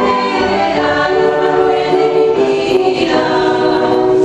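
Live folk-dance music from a small ensemble on stage, several melodic lines holding and changing notes together without a break.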